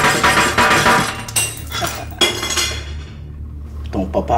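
Broken glass shards scraping and clinking against a glass tabletop as a wooden stick pushes through them. About two seconds in comes a sharper glass strike that rings briefly.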